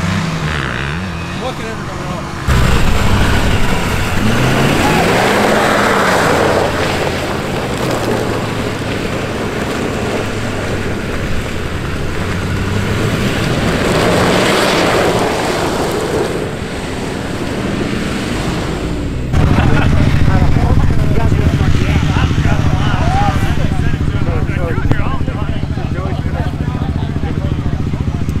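Ford Super Duty pickup driving through deep mud, its engine revving up and falling back in two surges with bursts of tyre and mud noise. After a cut about two-thirds of the way through, a steadier engine drone with voices over it.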